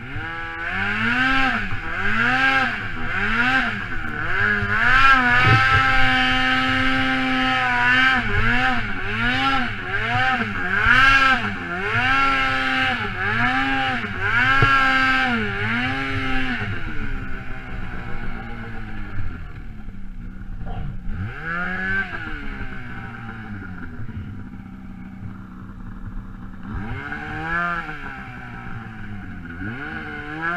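2013 Polaris Pro RMK snowmobile's two-stroke engine revving up and down in quick repeated throttle pulses, about one a second, while the sled is ridden through deep powder. Past the middle it settles to a lower, steadier run with one rev, then the revving pulses return near the end.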